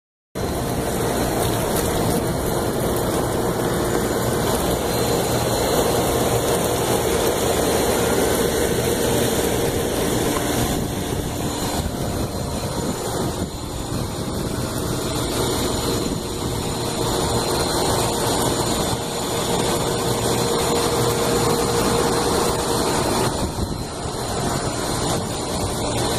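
Large rooftop HVAC equipment running: a steady, even drone of fan noise with a low hum underneath.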